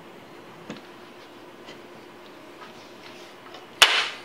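Wooden buttstock of a Winchester 1895 lever-action rifle being fitted back onto its metal receiver: a few faint clicks and taps, then one sharp knock near the end as the stock seats.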